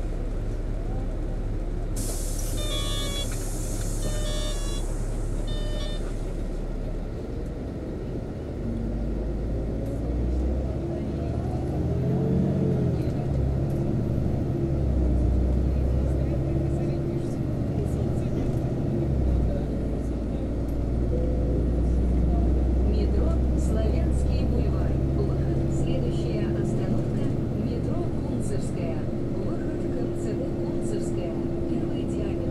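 City bus heard from inside: engine hum and road rumble, louder from about a third of the way in as the bus drives off, with an engine whine that rises and falls. A few short electronic beeps, in three quick groups, sound near the start.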